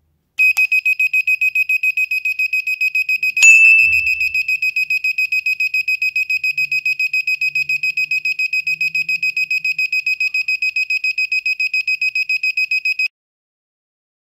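Small circuit buzzer beeping a steady high tone in fast even pulses, about five a second, driven by an NE555 timer. This is the tester's sign that the 555 chip is oscillating and working. A sharp knock comes about three and a half seconds in, and the beeping stops shortly before the end.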